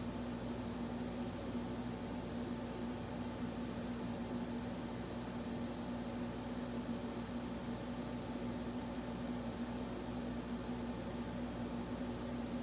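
Steady mechanical hum with one constant low tone over an even hiss, unchanging throughout.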